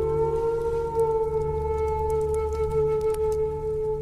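Native American flute holding one long steady note over a low sustained drone, in slow meditative music.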